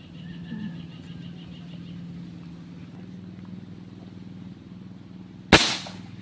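A single sharp airgun shot about five and a half seconds in, the loudest sound, over a steady low hum.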